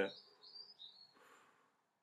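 The end of a spoken word, then near silence: faint high chirps in the first second and one soft, barely audible breath, then dead quiet.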